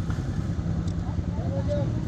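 Steady low rumble of motor traffic, with faint voices murmuring in the background.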